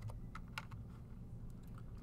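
A few faint, irregular clicks from operating the computer as the lecture slide is advanced.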